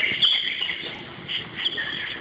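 Birds chirping: a series of short, high chirps repeating about every half second.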